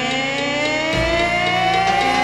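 Pop song passage: one long pitched note glides slowly upward over a bass line, which moves to a new note about halfway through.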